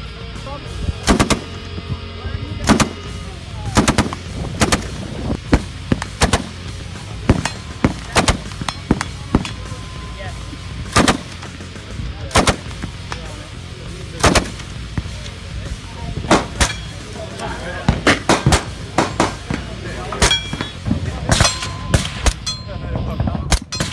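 Rifle shots fired one at a time at uneven intervals, about twenty in all, some much louder than others.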